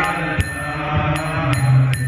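Devotional mantra chanting over a sustained low drone, with small hand cymbals (karatalas) striking a regular beat that leaves a high ringing.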